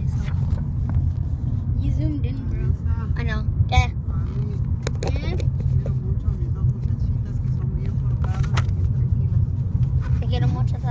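Steady low rumble of a moving car's road and engine noise heard from inside the cabin, with faint voices now and then.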